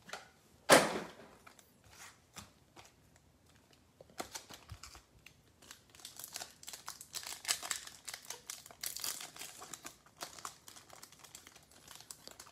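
Foil wrapper of a Bowman baseball card pack crinkling and tearing as it is worked open by hand, in scattered crackles that are thickest in the second half.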